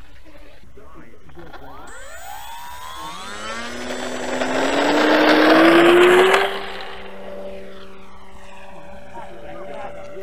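Radio-controlled model plane's propeller motor, a whine rising steadily in pitch and loudness over a few seconds, then cutting off abruptly about six and a half seconds in. Steady lower tones carry on after.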